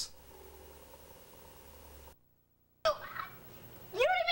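Faint steady low hum of room tone and tape hum. It cuts to dead silence for under a second at a tape edit, then restarts with a sudden click and a brief snatch of voice.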